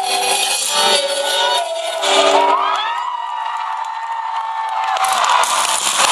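Live pop concert music recorded on a phone's microphone: a voice slides up and holds one long note, then the crowd cheers near the end.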